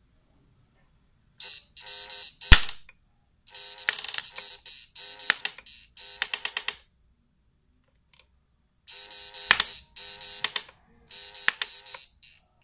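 Electric sparks arcing where the output leads of a homemade pulse-chopper electrofishing unit are shorted together: a harsh electrical buzz in about six short bursts with sharp snaps, the loudest about two and a half seconds in. The output is being shorted on purpose to show it can take it.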